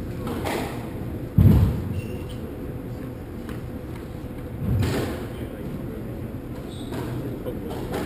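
Indistinct talk among people by the squash court, with a heavy low thud about a second and a half in and a softer thud near five seconds in.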